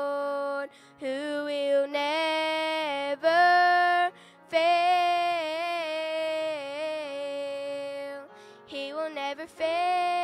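A woman singing a slow gospel song in long held notes with vibrato, in phrases broken by short breaks about a second and about four seconds in.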